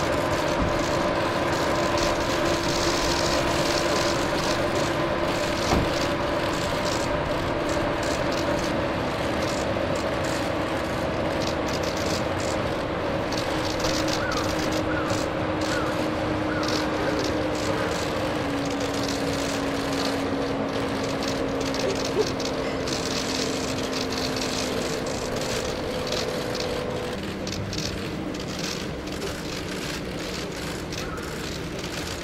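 Steady hum of idling cars whose pitch steps down twice in the second half, with scattered faint clicks and a single thump about six seconds in.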